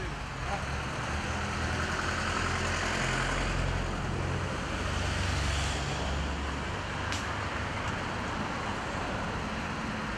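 Road traffic: a steady low rumble with the noise of passing vehicles swelling and fading, loudest through the middle of the stretch.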